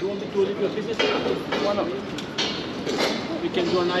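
Indistinct voices of people talking, with a few short sharp sounds among them.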